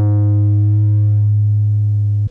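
Analog synthesizer bass tone processed through tape: one low note held steady, its upper overtones fading as it sustains.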